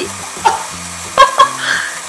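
Battery-powered toy blender running, a steady whirring hiss, with background music underneath.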